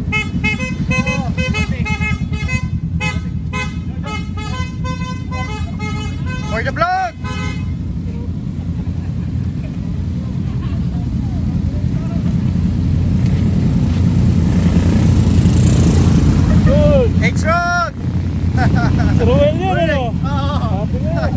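A group of Honda Rebel motorcycles idling and riding past, their engines a continuous rumble that swells as one passes close around the middle. Horns toot many times in quick succession through the first six seconds or so, and voices call out briefly near the start and near the end.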